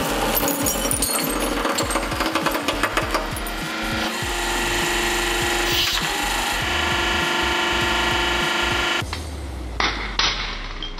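Glass shards cracking and crunching under a hydraulic press ram, a dense run of sharp clicks for the first three or four seconds, after which the crackle gives way to steady held tones.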